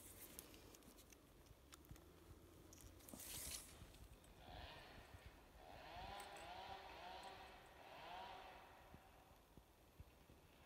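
Near silence, with faint handling rustle and a short zip as a steel tape measure blade is pulled out across a fresh-cut log face. A few faint rising-and-falling chirps follow in the middle.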